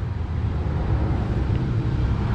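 Steady low outdoor rumble of background noise, with no distinct event standing out.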